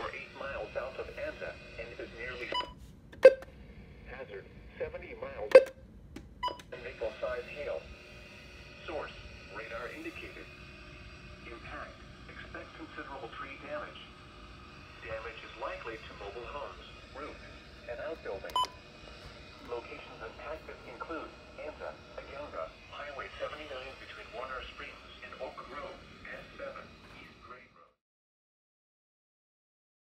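NOAA Weather Radio broadcast heard through a weather alert radio's small speaker: a voice reading out a severe thunderstorm warning. There are a few sharp knocks in the first seven seconds, the two loudest about three and five and a half seconds in, and one more about eighteen seconds in.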